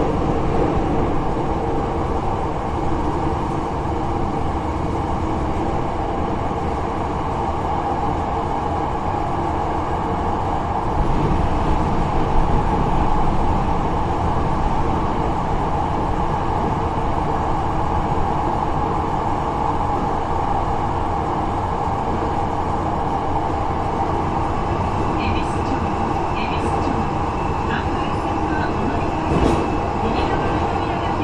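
Hankyu 8300 series commuter car (car 8303) heard from inside, its steady rumble of wheels and motors in a subway tunnel, with a few short clicks near the end.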